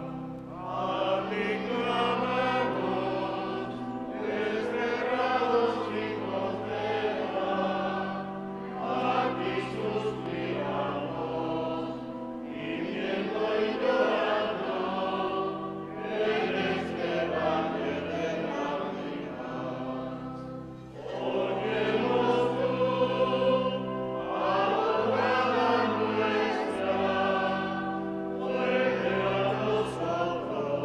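Church choir singing a hymn in phrases of about four seconds, each followed by a short breath, over steady held low notes.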